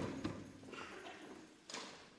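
Hard-soled shoes stepping on a hard floor: a sharp knock at the start, scattered lighter steps, and another knock near the end.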